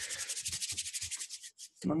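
Hands rubbing together close to the microphone: a fast, even scratchy rubbing of many strokes a second that fades out about a second and a half in.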